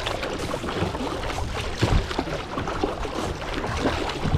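Water splashing and gurgling against the bow of a moving plastic kayak, with a louder splash about two seconds in.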